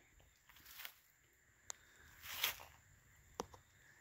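Faint rustling of dry fallen leaves, two soft swells with a couple of light sharp clicks between them, as of steps or movement in leaf litter.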